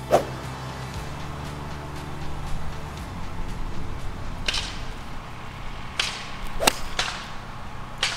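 A five hybrid strikes a golf ball off the tee with one sharp crack about two-thirds of the way in, with a few softer swishes before and after it. A low steady hum runs underneath.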